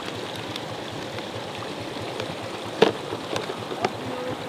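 Steady outdoor background noise with a few faint short clicks near the end.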